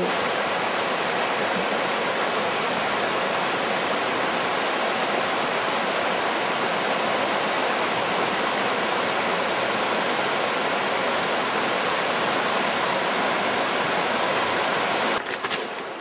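Mountain river water rushing over stones in a shallow riffle: a steady, even rush. About a second before the end it drops away abruptly to a quieter rush with a few faint clicks.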